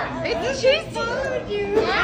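Young children's excited voices: shouts and squeals.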